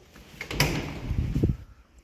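Landing door of a 1976 IFMA T46 traction elevator being opened by hand: a loud, noisy sound from about half a second in, lasting about a second, with a sharp knock at its start and another near its end.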